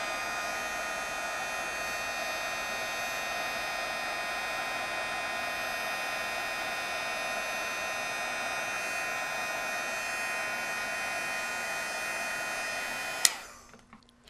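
An embossing heat tool blows hot air steadily over clear embossing powder to melt it: a rush of air with a fan whine made of several steady high tones. Near the end there is a click, and the sound quickly winds down.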